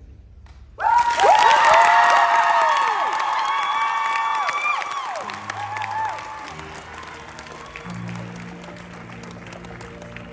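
An audience bursts into applause and whooping cheers about a second in, loud at first and then dying away. From about halfway through, a live band starts playing steady low notes underneath the fading clapping.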